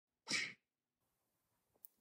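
A single short, sharp burst of breathy human vocal noise, about a third of a second long, near the start, followed by silence and a tiny click just before the spoken word.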